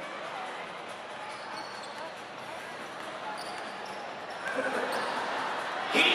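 A basketball being dribbled on a gym floor against a steady hubbub of crowd voices in a large hall. The crowd grows louder about four and a half seconds in.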